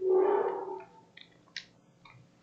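A short held vocal sound on one steady pitch that fades out within the first second, then two faint computer keyboard clicks.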